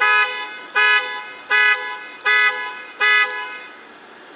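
A car horn sounding in a regular series of short honks, about five of them evenly spaced at a little more than one a second, stopping shortly before the end.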